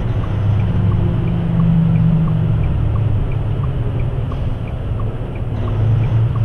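Diesel engine and road noise heard from inside a heavy truck's cab at highway speed: a loud, steady low drone whose pitch rises a little about a second in, then settles. A light tick repeats evenly about every 0.7 seconds throughout.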